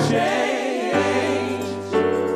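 Gospel vocal group singing live in harmony into microphones, a lead voice wavering in vibrato over held chords. A low sustained bass note sits underneath and shifts to a new pitch about a second in.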